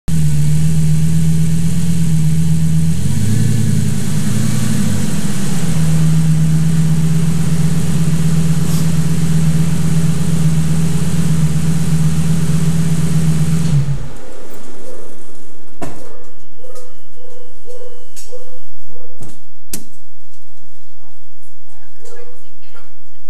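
Lamborghini engine with a newly fitted aftermarket exhaust, idling steadily; the revs rise briefly about three seconds in, and the engine is switched off about fourteen seconds in, leaving only a few faint clicks.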